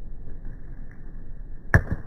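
A cricket bat striking a ball once near the end, a single sharp crack, over a low steady hum.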